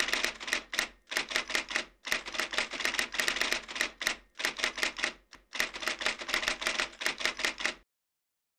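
Typewriter sound effect: rapid runs of key clicks, broken several times by brief pauses, keeping time with the letters appearing on screen.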